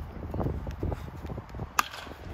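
A baseball bat hits a pitched ball with one sharp crack near the end. A low rumble runs underneath.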